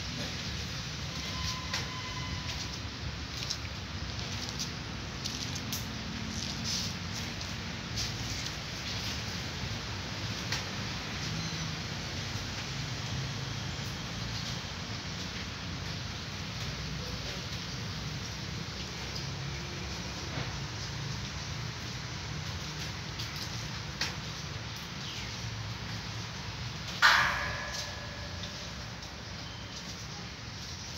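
Two cats eating rice from a metal tray: small, faint clicks of eating and of the tray over steady background noise, with one short, loud pitched call near the end.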